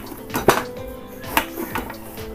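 Hand kneading tapioca dough on a stainless steel plate, with two sharp clinks against the metal, about half a second in and near one and a half seconds, over background music with held tones.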